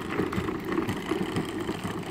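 Plastic wheels of a Step2 ride-on toy car rolling fast over a concrete sidewalk as it is pushed, a steady clatter of many small irregular knocks.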